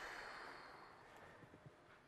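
Near silence: the last faint tail of an alphorn note dying away steadily, with two faint clicks near the end.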